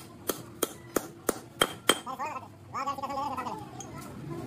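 A hammer tapping a tool held on the valve spring retainers of a three-cylinder cylinder head: sharp metallic strikes about three a second, six in the first two seconds. A man's voice is heard briefly in the middle.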